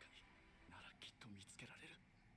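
Faint, quiet speech: a character's dialogue from the subtitled anime episode playing low under the reaction.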